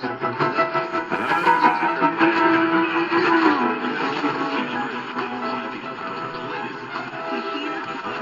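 AM broadcast music playing through a C.Crane CC Radio EP Pro's speaker, with two stations mixing on the same frequency. The sound is cut off above the treble, as on AM reception.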